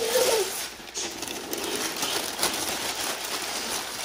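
Newspaper being crumpled and scrunched into balls by hand: a continuous crackling rustle with a few sharper crinkles.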